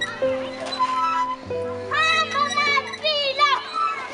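Children's high voices calling out and shrieking at play, over background music with held chords.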